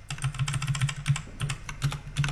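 Computer keyboard keys being pressed in a quick run of clicks, about seven a second, as text is deleted from a line of code.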